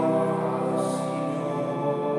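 Church music: long held chords with voices singing.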